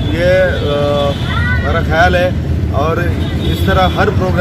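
A man speaking, over a steady low background rumble.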